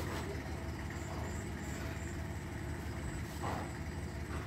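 Iseki TS2810 compact diesel tractor running steadily on cage wheels while working a flooded rice paddy, a low, even engine drone.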